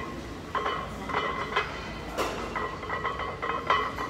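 Weight plates clinking and rattling on a loaded barbell as a squat is performed with it: a string of sharp metallic clinks, each with a brief ring.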